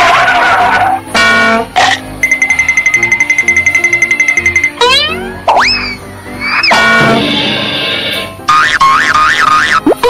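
Cartoon-style sound effects over upbeat background music. There are quick springy sweeps up and down in pitch, a high fluttering whistle held for a few seconds near the start, and a wavering, wobbling tone near the end.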